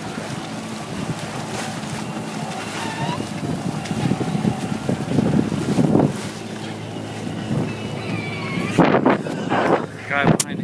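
Bow wave of a sailboat under sail rushing and splashing along the hull, with wind buffeting the microphone; the wash swells about four to six seconds in. A few bumps near the end as the camera is handled.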